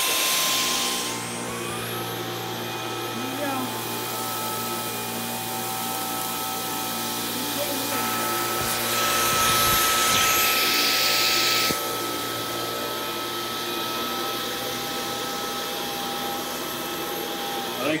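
Dyson V11 Animal cordless stick vacuum running on carpet, picking up spilled cream of wheat. It comes on suddenly and holds a steady whine with several fixed tones, then stops near the end. Midway a louder hiss rises over it for about three seconds.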